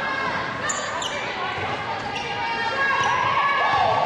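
Game sound in a gym during a women's basketball game: players' and fans' voices calling out over a ball bouncing on the hardwood floor. Short high squeaks come about a second in.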